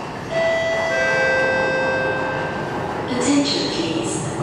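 Station public-address chime: two held notes, the second lower, ringing for about two seconds, followed near the end by a recorded announcement voice beginning to speak.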